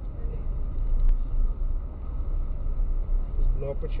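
Low, steady road and engine rumble inside a moving car's cabin, picked up by a dashcam microphone. A voice starts in just before the end.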